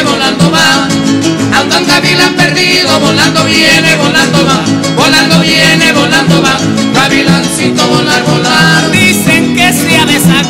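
Latin American dance music playing: an instrumental stretch with a steady beat, between the sung verses of the song.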